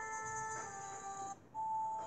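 Soft background music of held notes that shift to a new pitch about every half second, with a brief break about one and a half seconds in.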